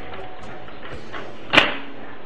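Steady background music with one short clink about one and a half seconds in, as a metal electrode plate of the dry cell is fitted down over the bolts.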